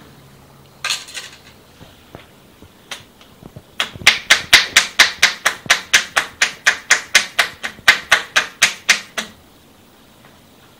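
Percussion head massage with clasped hands: a fast, even run of sharp hollow claps, about five a second, as the palms held together strike the client's head, lasting about five seconds and stopping abruptly.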